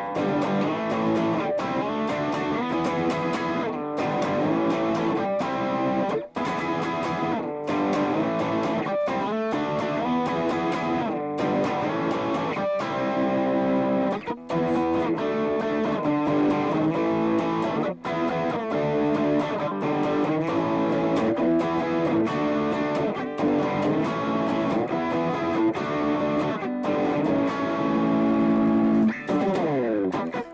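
Rogue electric guitar played with riffs and chords in an 80s rock style, with a few short breaks.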